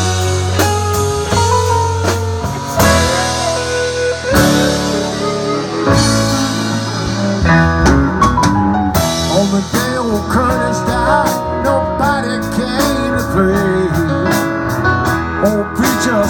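Live blues-rock band playing an instrumental break: an electric guitar lead with bent notes over bass and a drum kit with cymbals.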